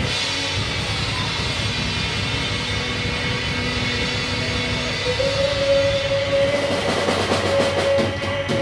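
Live rock band of electric guitars and drums coming in loudly all at once and playing on. About five seconds in, a guitar holds a long note, and near the end the drum beats stand out more.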